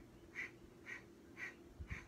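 Rapid rhythmic breathing through the nose, the Kundalini breath of fire, with short, sharp exhalations about twice a second. A faint steady low hum runs underneath.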